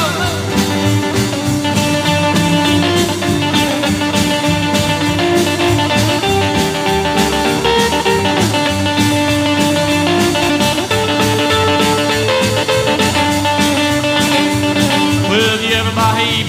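Instrumental break in a rockabilly song: a lead instrument plays held notes over bass and a steady beat, with no vocals.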